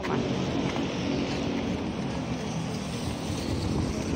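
Steady street traffic noise along a city road, an even rush without distinct events.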